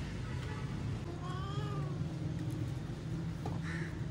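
A cat meows once about a second in, one call that rises and then falls in pitch, over a steady low background hum.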